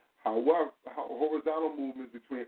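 A person's voice in two long, drawn-out stretches with a brief break just under a second in.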